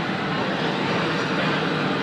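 Steady background rush of a large exhibition hall: an even noise with no distinct events.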